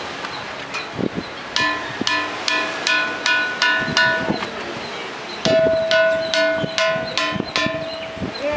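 A ringing rock struck repeatedly with a small hand-held stone, each blow giving a bright, bell-like ring of several pitches at once. Two runs of about seven quick strikes, the first starting about one and a half seconds in, the second after a short pause near the middle, with a lower ring holding on through the second run.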